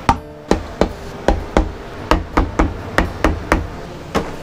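Rubber mallet tapping a final drive side cover home on a VW transmission case: about a dozen sharp knocks, roughly three a second.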